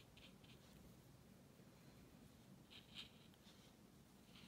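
Near silence with a few faint, brief touches of a paintbrush dabbing watercolour onto a paper postcard. The clearest touch comes about three seconds in.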